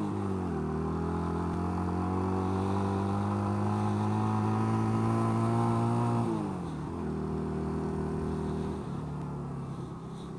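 1985 Honda Rebel 250's air-cooled parallel-twin engine pulling in gear. Its pitch drops sharply right at the start, then holds and slowly climbs before dropping again about six seconds in, as with an upshift. The engine gets quieter near the end.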